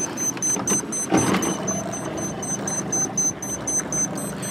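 Wind rushing over the microphone out on open water, with a brief stronger gust about a second in. After the gust a low steady hum, like a motor, joins it.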